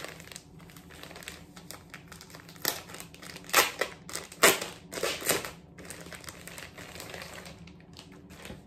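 Crinkly plastic packaging of a T-shirt pack being handled and opened. A run of loud crackles comes from about three to five and a half seconds in.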